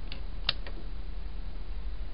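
Rocker switch on a power strip being flipped on: one sharp click about half a second in, with a few fainter clicks around it. A steady low hum runs underneath.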